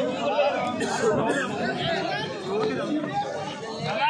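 Many people talking at once: overlapping voices of players and spectators.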